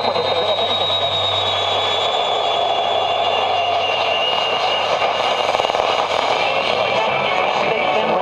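Sony TFM-1000W radio on the AM band giving steady hiss and static as its tuning dial is turned between stations. A thin heterodyne whistle slowly falls in pitch through the first half.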